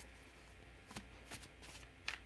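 Tarot cards being shuffled by hand, faint: a few soft card flicks and rustles, the first about a second in.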